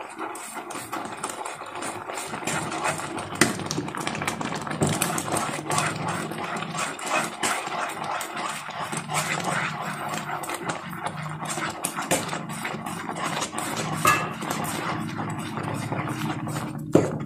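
Semolina (rava) pouring into a non-stick pan of hot beetroot liquid as a wooden spatula stirs and scrapes through it, with many small scrapes and clicks against the pan throughout.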